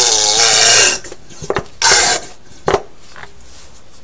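Plastic quart bottle of 75W-90 gear oil squeezed into the fill hole of a GM 14-bolt rear axle: air and oil sputter out of the nozzle in two loud spurts, the first nearly a second long and the second shorter about two seconds in. A short click follows.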